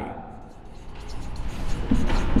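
Marker pen writing on a whiteboard, faint short strokes, over a low background rumble that grows from about a second in.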